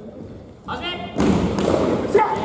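A fighter's short shout, then about a second in a loud dull thud as air-filled soft swords strike, with shouting over it.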